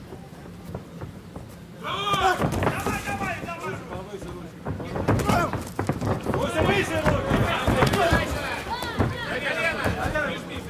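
Men shouting loudly from about two seconds in, over the action of an MMA bout, with scattered dull thuds of strikes and bodies against the ropes and cage.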